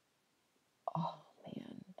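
Near silence, then a woman's voice starts speaking about a second in.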